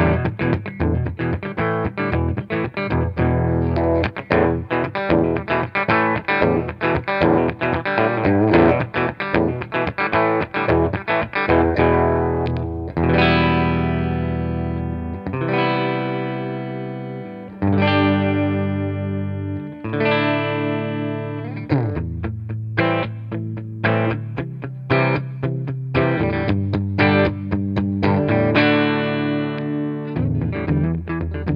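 Eastcoast GS10 double-cutaway electric guitar with twin humbuckers played through an amp. It opens with a quick run of picked notes on the neck pickup, then moves to long held chords that ring out for a couple of seconds each on both pickups together, and turns to busier picking again on the neck pickup near the end.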